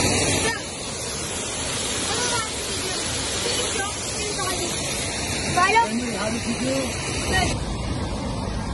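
Steady rushing noise of a waterfall, with faint voices over it.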